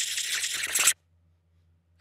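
A rattling shake sound effect, like small hard pieces rattled in a container, that stops suddenly about halfway through.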